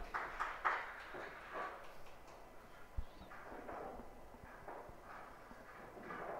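Pool hall background: a faint murmur of voices with scattered light clicks, and a dull thump about three seconds in.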